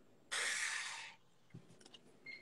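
A person's breathy exhale, a short unvoiced huff of air lasting under a second, followed near the end by a few faint ticks.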